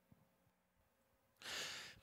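Near silence, then about one and a half seconds in a single short, audible in-breath by the singer, taken just before singing the next pattern.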